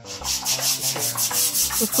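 A rapid, regular rasping or rubbing noise, about five strokes a second, starting suddenly.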